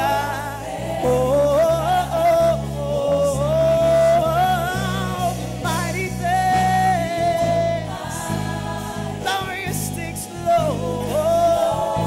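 Gospel worship team singing a praise song into microphones, a sung melody with long held notes over instrumental accompaniment with a steady bass line.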